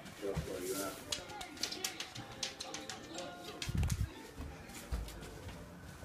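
A husky making soft whining, cooing vocal sounds as it walks, with light clicking and two low thumps about four and five seconds in.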